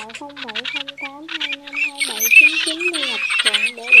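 Played-back lure recording of a teal and garganey flock calling: dense, overlapping duck calls with many short notes in quick succession and higher wavering notes above them.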